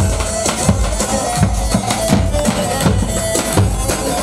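Kurdish folk dance music: davul drums beating a steady rhythm, about two to three strokes a second, under a reedy wind melody.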